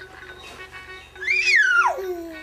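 A baby's high-pitched squeal, rising and then sliding steeply down, lasting just under a second in the second half. Under it, a steady electronic tone from a baby's musical activity toy.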